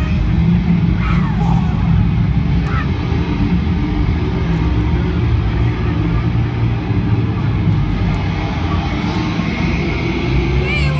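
Loud, distorted concert sound in an arena, heard from the crowd: a heavy low rumble of music through the PA, with crowd voices and a couple of short shouts or whistles near the start.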